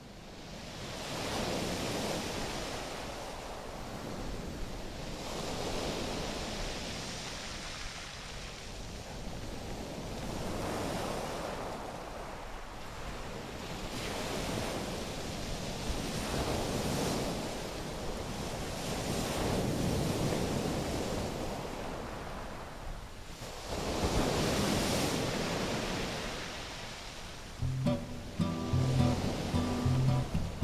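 Ocean surf breaking on a beach, swelling and falling back every four to five seconds. Acoustic guitar music comes in near the end.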